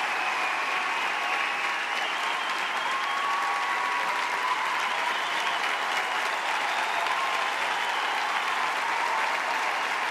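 Large arena audience applauding steadily.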